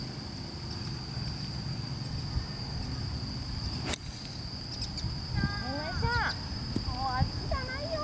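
A golf iron strikes the ball on a full fairway swing, one short sharp click about four seconds in, over low wind rumble and a steady high whine. A few seconds later come several short calls that rise and fall in pitch.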